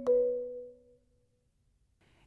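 Concert marimba struck with yarn mallets: the last stroke of a four-mallet stepwise exercise, its notes ringing and dying away within about a second, then silence.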